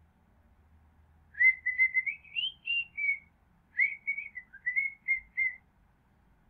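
A person whistling a short tune in two phrases of about two seconds each, single wavering notes rising and falling, with a brief pause between them.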